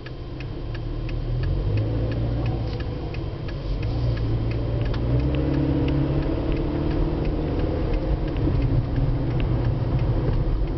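Inside a car's cabin, the turn-signal indicator ticks steadily. Under it the engine and road noise grow louder about a second in as the car pulls away and turns.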